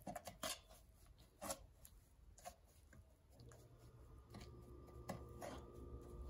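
Faint scraping and a few light taps of a spatula working sticky brown-sugar caramel around a bundt pan. A faint steady hum comes in about halfway through.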